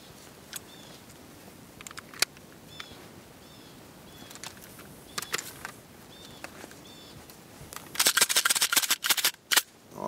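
Robinson Armament XCR rifle being handled and function-checked after being buried in sand: scattered metallic clicks, one sharp clack about two seconds in, then a dense rattling burst lasting about a second near the end.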